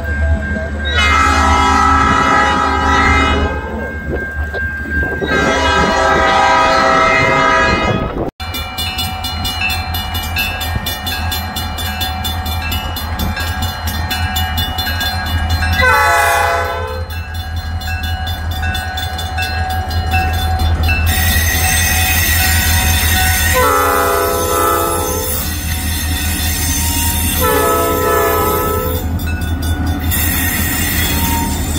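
Diesel freight locomotive sounding its air horn for grade crossings over the steady low rumble of its engine: two blasts of a couple of seconds each, a break, then a short blast and two more blasts near the end.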